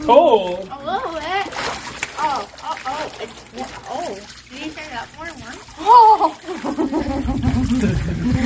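Water splashed by hand in a shallow tarp-lined truck-bed pool, under frequent wordless voices that sweep up and down in pitch.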